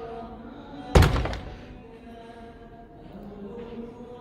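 A door shutting with a single heavy thud about a second in, ringing on briefly in the large hall.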